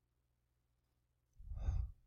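Near silence, then about a second and a half in, one short exhaled sigh from a man.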